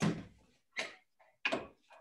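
Three clunks about three-quarters of a second apart, each dying away quickly, as kitchen containers and utensils are handled and set down on a countertop while arepa dough ingredients are being added, heard over a video call.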